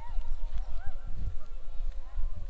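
Footsteps on dry crop stubble with wind buffeting a body-worn action camera's microphone, heard as irregular low thumps and rumble. Faint short rising-and-falling calls sound over them.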